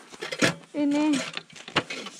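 A woman's drawn-out vocal exclamation about a second in, between sharp clicks and clatters from the snow racer she is sitting on.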